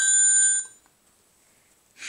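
Cordless phone handset's electronic ringtone, a bright multi-tone ring that cuts off suddenly about half a second in.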